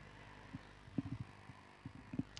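Faint, short low thumps or knocks, a few at irregular intervals with a small cluster about halfway through, over quiet background.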